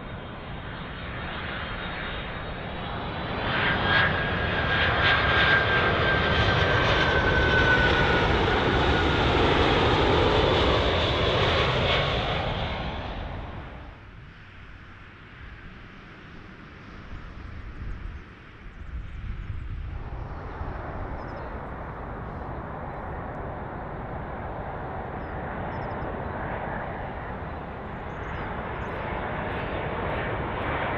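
A Boeing 767-300 jetliner passes low overhead on landing approach. Its engine noise builds about four seconds in, a whine falls in pitch as it goes over, and the sound fades. After a quieter stretch, the steady engine sound of a Boeing 787-8 on approach follows.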